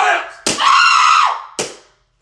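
A high-pitched voice crying out in one long wail of about a second, with a sharp slap-like hit just before it and another as it ends.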